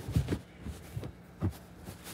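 A few low, dull thumps: two close together just after the start and another about a second and a half in.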